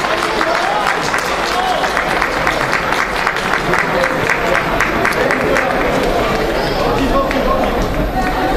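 Spectators shouting and clapping, with a dense run of sharp claps from about a second in until about six seconds in.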